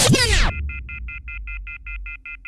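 Rewind sound effect in a title sequence: a dense descending sweep that stops about half a second in, followed by a rapid run of short electronic beeps, about six a second.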